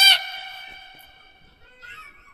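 A high-pitched voice ending a drawn-out note, its tone fading away over about a second and a half, with a faint short sound near the end.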